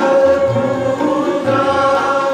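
Sikh kirtan: voices singing a devotional hymn in long held notes with gliding ornaments, accompanied by bowed string instruments and tabla.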